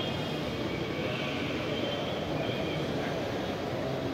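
Steady background noise in a large lobby, an even rumble with faint thin high tones drifting over it.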